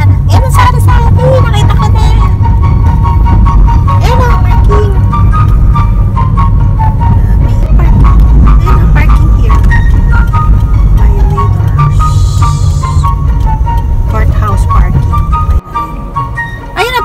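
Loud, low rumble of wind and road noise on the microphone in a moving car, which cuts off suddenly near the end. A light melody of background music plays over it.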